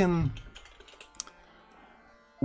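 Computer keyboard keystrokes: a few separate clicks within about the first second, then quiet.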